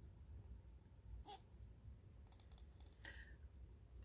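Near silence: room tone with a few faint soft clicks, about a second in and again near the end, from the hardcover picture book being handled.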